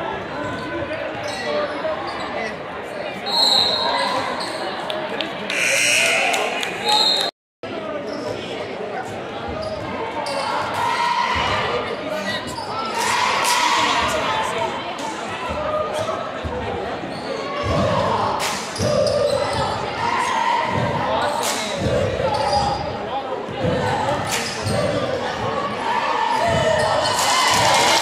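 Basketball being dribbled on a hardwood gym floor, the bounces echoing in a large gym over steady crowd chatter. The sound cuts out completely for a moment about a quarter of the way in.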